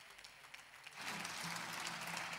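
Applause from a group of seated members of parliament: faint at first, then rising to a steady clapping about a second in.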